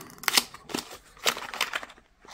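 Small paperboard box being opened by hand, its end flap pulled back and the batteries slid out against the cardboard: a run of short scrapes and rustles.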